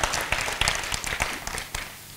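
Audience applause: a short round of many hands clapping that thins out and stops near the end.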